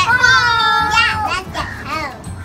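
Young children's high-pitched voices calling out in play, with one drawn-out call lasting about a second, followed by shorter calls.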